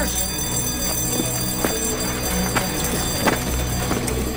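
Steady low machinery rumble of a steamship's engine and boiler room, with about five sharp metallic clanks spread through it.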